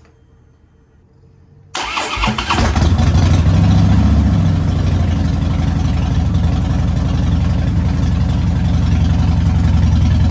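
Harley-Davidson Softail V-twin engine cranked by the electric starter about two seconds in. It catches within a second on its freshly installed battery, revs up briefly, then settles into a steady idle.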